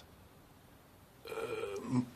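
A short near-silent pause, then a drawn-out hesitant "äh" from a person's voice, starting a little past halfway.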